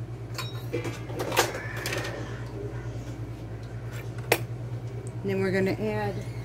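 Kitchen utensils and dishes being handled on a wooden counter: a few sharp clicks and knocks, the loudest about four seconds in, over a steady low hum.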